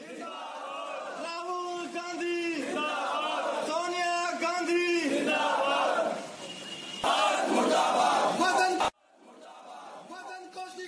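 A crowd of men shouting protest slogans together in short, repeated phrases. The shouting cuts off suddenly near the end.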